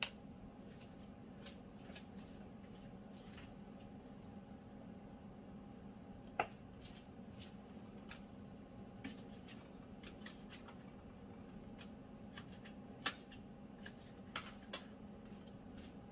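Scattered light clicks and taps of kitchen food preparation, a knife and produce being handled on a counter and plate, with two sharper knocks about six and thirteen seconds in, over a steady low hum.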